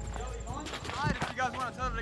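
Quiet talking in the background, with a few light taps or clicks.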